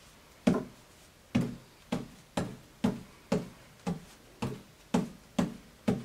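Juggling balls dropped one at a time onto a cloth-covered table, landing with short dull thuds at about two a second, around eleven in all.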